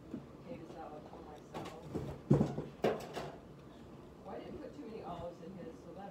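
Faint, indistinct voices in the background, with two sharp knocks about two and a half and three seconds in.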